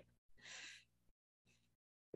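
Near silence, with a faint breath about half a second in, lasting about half a second.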